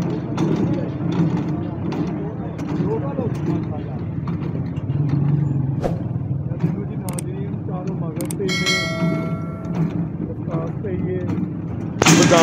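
Small gasoline engine running steadily, driving a mechanical pestle that grinds sardai paste in a large bowl. A short high-pitched tone sounds for about a second near the end.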